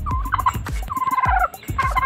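Domestic tom turkey gobbling: rapid rattling calls, loudest in two bursts in the second half, over background music with a steady beat.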